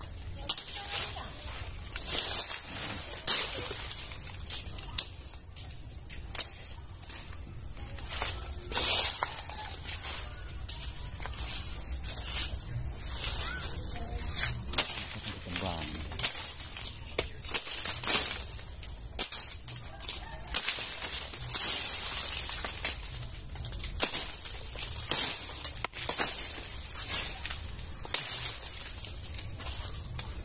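Mango tree leaves and twigs rustling and scraping against a handheld phone and hand as it is pushed through the foliage, in irregular sudden bursts over a low rumble.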